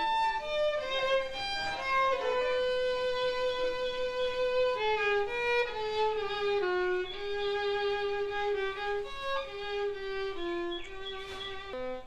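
Solo violin playing a slow melody one note at a time, with long held notes; one note is held for nearly three seconds about two seconds in, and later phrases sit lower in pitch.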